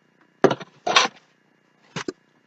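Sticky tape being pulled off a roll and torn: two short rasps about half a second apart.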